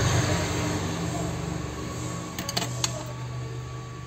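A steady low hum that slowly fades, with a few small sharp clicks of phone parts being handled about two and a half seconds in.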